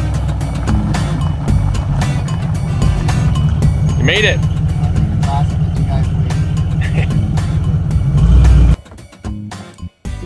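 Full-size Ford Bronco's engine running steadily close by, a loud low rumble that cuts off near the end.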